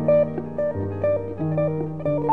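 Jazz duo of piano and guitar playing a slow, quiet piece, with sustained low notes under changing chords and a melody line.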